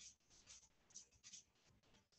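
Near silence: room tone, with a few faint, short rustles.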